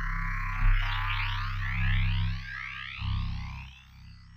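Metallic synth bass note from Image-Line Harmor resynthesizing a photo, run through Ableton's Corpus resonator: a held low note under a hissy, metallic upper layer streaked with rising sweeps. It dips about two and a half seconds in and fades near the end.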